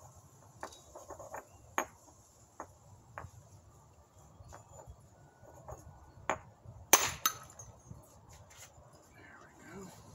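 Stone on stone: light clicks and taps as a stone core is handled and worked in flintknapping, then one sharp, loud percussion crack about seven seconds in, followed closely by a smaller one.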